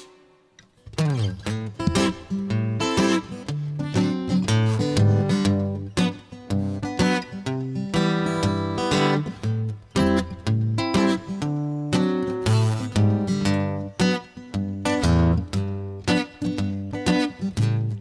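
Solo acoustic guitar playing an instrumental break, a mix of picked single notes and strummed chords. It starts after a brief pause of about a second.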